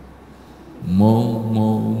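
A man's voice through a handheld microphone, holding one long, steady low note on a hummed syllable, starting about a second in.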